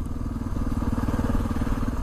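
Honda XR650R's single-cylinder four-stroke engine running at a steady cruise, a fast, even train of firing pulses with no change in pitch, under wind noise on the moving bike.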